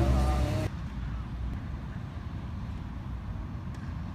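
Background music that cuts off abruptly less than a second in, leaving a steady low outdoor background rumble.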